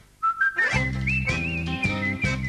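Closing-credits music starts after a brief silence. A whistled tune steps up and slides into wavering high notes over a band with a steady beat of about two a second.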